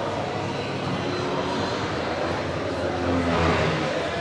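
Steady aircraft engine noise, swelling briefly near the end, with faint voices underneath.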